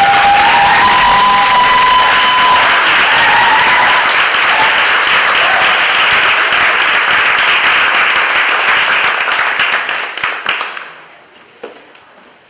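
Audience applauding loudly and steadily, dying away about eleven seconds in.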